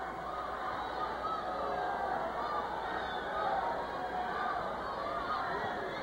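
Arena crowd noise: many voices shouting and cheering at once, holding a steady level.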